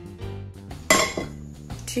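A single loud metal clank about a second in as an empty metal kadhai is set back down on the gas stove's grate, ringing briefly, over steady background music.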